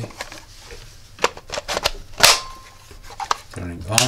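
Plastic clicks and knocks as a 3D-printed power supply case is handled and fitted onto a Parkside 20 V drill battery. One loud snap comes a little over two seconds in, followed by a brief steady tone.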